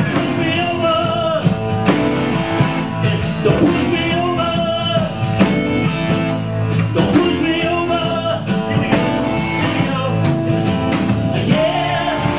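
A live folk-rock band playing a song: strummed acoustic guitar over bass, drums and organ, with a melody line of bending notes.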